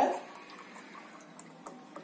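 Milk pouring from a carton into a mug: a faint, steady trickle, with a few light clicks near the end.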